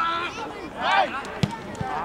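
Footballers' voices shouting on an outdoor pitch, two short calls, with two short dull thuds shortly after the second call.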